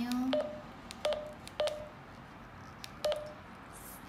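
Keypad tones from a Retevis RT3S handheld radio: four short beeps, each starting with a button click, as its keys are pressed to step through the menu. Three beeps come in the first two seconds and one about three seconds in.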